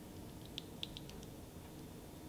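A Dye i5 paintball mask handled as it is pulled on over the head: a few faint, light plastic clicks and taps in quick succession around the first second, otherwise quiet.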